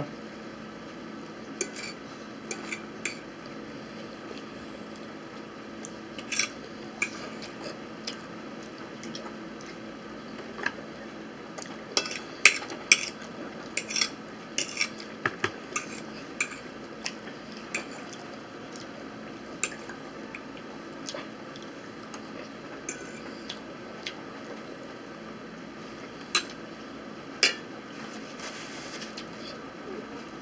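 Eating at a table: scattered short clinks and taps of a utensil and fingers against a dinner plate, more frequent in the middle, over a steady background hum.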